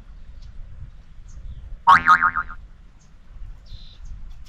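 A cartoon 'boing' sound effect about halfway through: one short, springy, wobbling tone with a sharp start, over a steady low background rumble.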